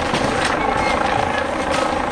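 Steady drone of a helicopter, with people's voices heard over it.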